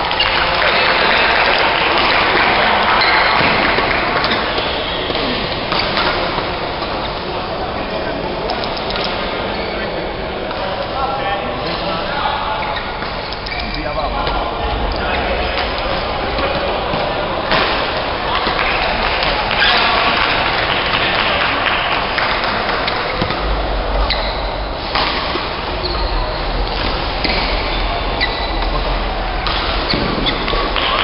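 Badminton doubles rally: rackets striking the shuttlecock in scattered sharp hits, with shoes moving on the court floor. People talk throughout.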